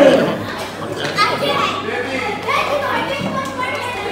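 Children and adults chattering over one another in a large, echoing hall, with children's voices prominent.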